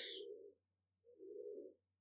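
Faint low cooing of a bird: two short coos about a second apart.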